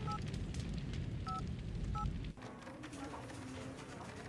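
Three short two-tone telephone keypad beeps over a low, rumbling background noise that drops away a little after two seconds in, leaving a quieter bed of faint sounds.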